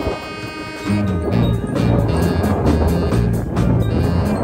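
Live small band playing, with brass horn and saxophone over a pulsing bass line and drums. For about the first second the bass drops out under a held horn chord, then the beat comes back in.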